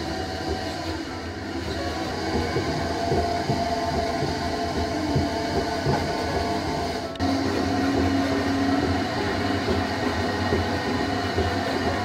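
Potter's wheel spinning while a metal trimming tool turns a stoneware bowl, paring off ribbons of clay: a continuous scraping over the wheel's steady hum. The sound changes abruptly about seven seconds in, becoming louder with a steadier hum.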